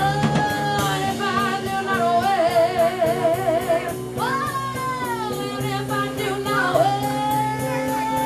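Live rock band: a woman singing long held notes, one with a wide vibrato partway through, over electric guitar, electric bass and drum kit.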